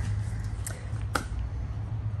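Two short, sharp clicks about half a second apart, near the middle, over a steady low hum.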